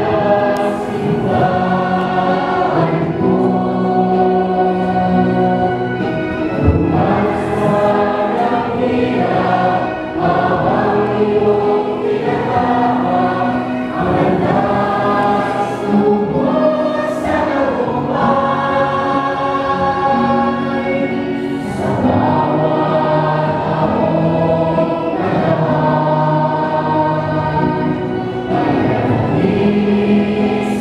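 A choir sings a hymn in long held phrases, with short breaks every four seconds or so.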